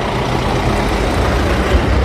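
A truck engine running nearby, a steady low rumble that grows slightly louder.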